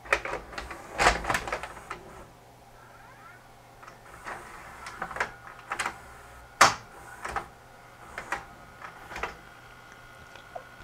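VHS cassette being inserted into an open Sanyo FWZV475F VCR/DVD combo deck, the loading mechanism drawing it in: a series of sharp mechanical clicks and clunks from the cassette carriage and gears, the loudest about two-thirds of the way through. A faint steady tone comes in near the end.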